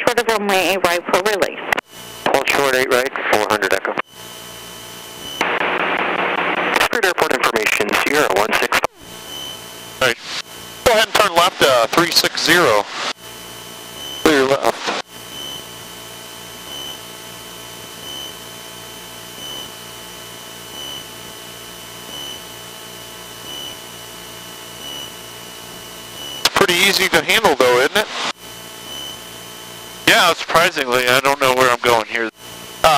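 Radio voice transmissions over the headset intercom, broken by a burst of static about five seconds in. Between them comes the steady drone of the Cessna 162 Skycatcher's engine, heard faintly through the intercom, with a faint high tone pulsing a little more than once a second.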